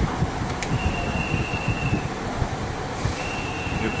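Steady machine hum with a low, uneven rumble, and a thin high whine that comes in twice.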